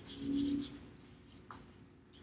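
Wax crayon held on its side, rubbed across paper in quick scratchy shading strokes during the first second. A brief steady low hum-like tone is heard at the same time, and there is a small click about one and a half seconds in.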